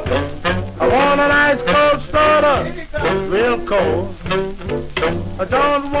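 A 1951 shellac 78 rpm record of early doo-wop rhythm and blues playing on a turntable: a vocal group with a small band.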